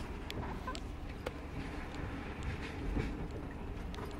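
Sleeper train running, heard from inside a carriage of bunks: a steady low rumble with scattered light clicks and knocks.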